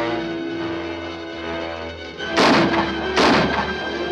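Dramatic orchestral film score, with two loud crashes about two and a half seconds in and again under a second later.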